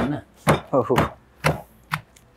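Pestle pounding shallots and green leaves in a stone mortar, about two dull strikes a second.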